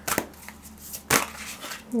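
A deck of cards being shuffled by hand, with a couple of sharp snaps about a second apart.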